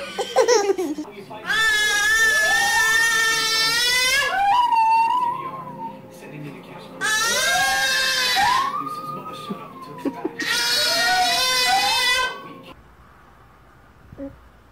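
A baby crying in three long wails, each about two seconds, with a wavering pitch.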